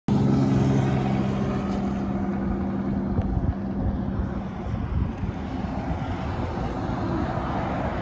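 Highway traffic passing: tyre and engine noise from cars and trucks on a multi-lane highway. A vehicle's engine hum fades away over the first few seconds.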